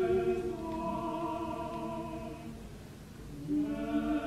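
Opera chorus singing long held notes with the orchestra. The sound grows softer to a low point about three seconds in, then a new sustained chord begins.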